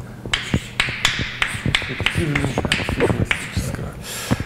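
Chalk writing on a blackboard: an irregular run of sharp taps, a few a second, as the strokes of a formula go down.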